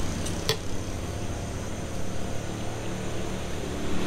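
Road traffic going by, a steady low rumble, with two short sharp clicks about half a second in.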